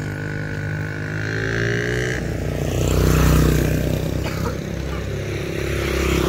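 Motorcycle engines running past on the road. The engine sound swells to its loudest about three seconds in, then eases off.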